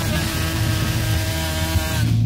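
Loud punk rock band: distorted electric guitars and cymbals in a dense, steady wall of sound.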